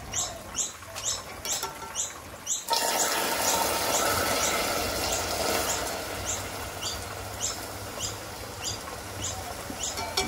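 Water poured into a saucepan of hot caramel, which starts sizzling and bubbling hard about three seconds in and keeps on bubbling: the caramel being thinned down into a syrup. A bird chirps over and over, about two or three times a second.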